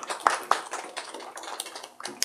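A small classroom audience clapping: a quick run of irregular claps that thins out near the end.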